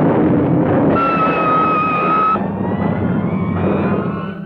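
Film soundtrack sound effects: a dense, steady rumble, with a high steady electronic tone sounding from about a second in to a little past two seconds.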